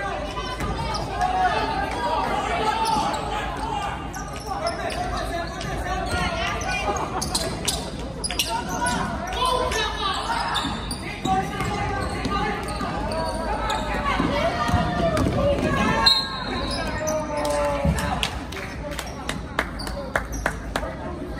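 A basketball bouncing on a hardwood gym floor during play, against continuous shouting and chatter from players and spectators.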